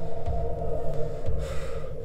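A man gasping and breathing heavily over a low, sustained music drone.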